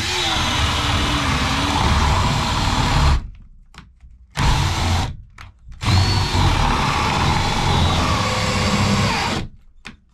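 Cordless drill boring through a wooden stud with a long bit, its motor whining under load. It runs about three seconds, stops, gives two short bursts, then runs again for about three and a half seconds before stopping near the end.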